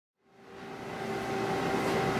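A steady background hum and hiss with a faint high tone, fading in from silence.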